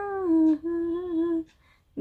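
A woman humming two held notes with a short break between them, the first slipping a little lower before the break.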